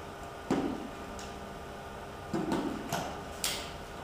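A few scattered clicks and knocks of firefighting gear being handled as an SCBA face piece is fitted and a helmet is pulled on.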